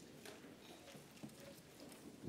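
Near silence with faint, scattered footsteps and small knocks from people shuffling forward in a line across a church floor.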